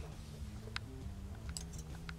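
A few faint, light clicks as a thin double-edge razor blade is picked up off a countertop and handled beside the open metal blade clip of a Twinplex stropper.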